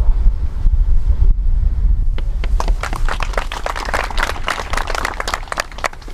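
Wind rumbling on the microphone, then from about two seconds in a group of people clapping together, closing a minute of silence.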